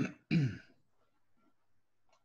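A man clearing his throat: two short bursts within the first second, the second falling in pitch.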